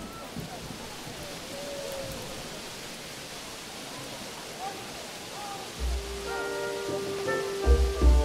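Steady hiss of heavy rainfall. About six seconds in, background music comes in with held notes and a couple of low thuds.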